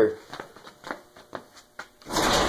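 Footsteps on a concrete floor, about two a second, as short, faint knocks.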